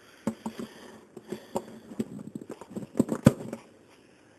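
Irregular clicks and light knocks from handling an acoustic guitar and its strings as the last strings come off, with two sharper knocks about three seconds in.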